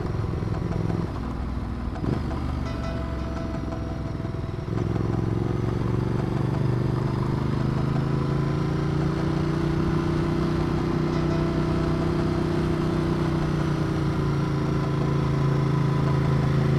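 Ducati Multistrada 1200's V-twin engine pulling the bike along at low speed. About five seconds in, the engine note steps up and then holds steady as the bike climbs in second gear.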